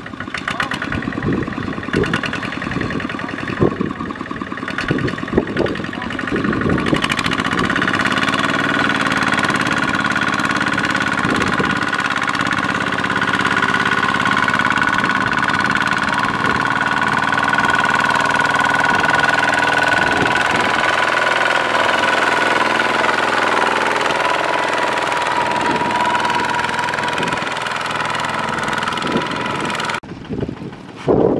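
Kubota ZT155 power tiller's single-cylinder diesel engine running under load as the tiller and its loaded trailer work through sticky mud. Irregular knocks for the first several seconds, then from about seven seconds in a louder, steadier run with a steady high whine.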